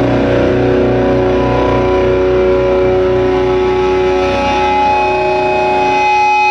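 Live band's distorted electric guitars and bass guitar holding a steady, droning chord, with the held notes ringing on.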